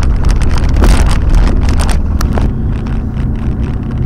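A car's engine and road noise heard from inside the cabin while driving: a loud, steady low rumble with frequent sharp clicks and rattles over the first half, thinning out after that.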